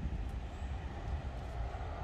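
Outdoor background noise: a steady low rumble with a faint hiss above it.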